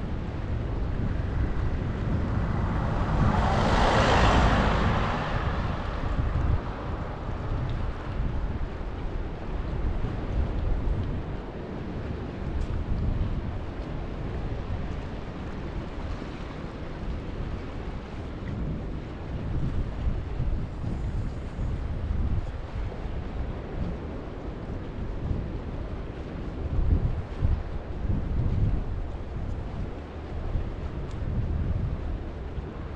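Wind rumbling on the microphone over the wash of sea water on a rocky shore, with one broad rushing swell that rises and fades about four seconds in.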